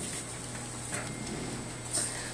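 Room tone in a pause between spoken sentences: a steady, fairly quiet hiss with a faint low hum underneath.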